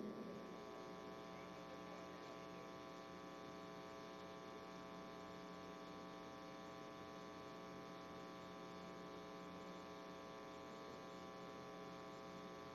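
Faint, steady electrical mains hum with a buzzy edge in the audio feed, unchanging throughout.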